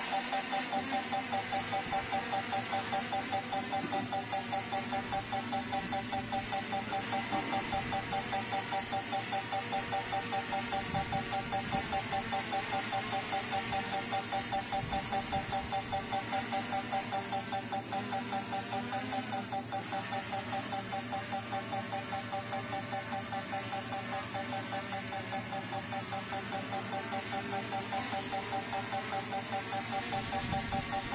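DJI Mini 4 Pro drone hovering, its propellers giving a steady hum with a regular pulsing beat.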